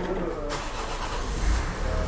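A vehicle's engine running as a low rumble, growing louder about a second and a half in, over a steady background hiss.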